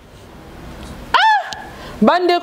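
A single short, high-pitched cry a little past halfway in, its pitch rising then falling, after a second of quiet room tone.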